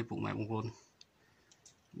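A person speaking briefly, then a pause with a few faint, short clicks.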